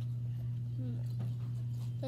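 A steady low hum under faint chewing of raw cucumber, with a few soft crunchy clicks and a short hummed "mm" about a second in.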